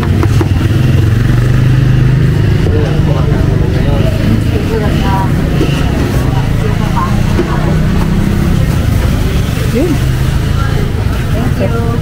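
Motor vehicle engine running close by, a loud steady low drone, with faint background voices.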